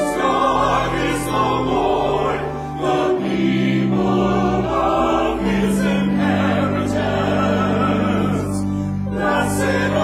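Church choir singing in harmony, with organ accompaniment holding steady low notes that change every second or two.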